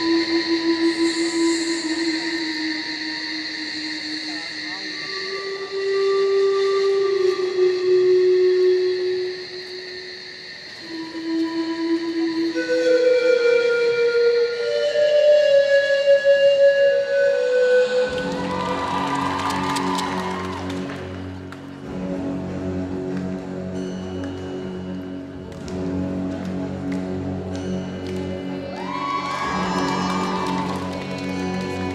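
Music for a group gymnastics routine. It opens with a slow melody of long held notes that climbs in pitch. About eighteen seconds in, a fuller arrangement with low bass notes comes in.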